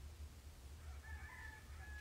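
A rooster crowing faintly in the distance, beginning about a second in, over a steady low hum.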